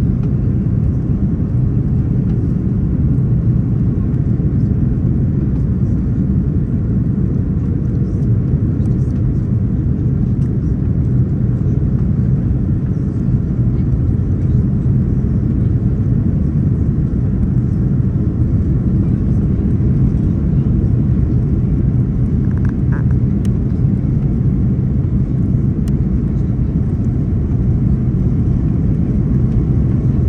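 Steady low rumble inside an Airbus A330-200 cabin over the wing: engine and airflow noise during the final approach and landing roll.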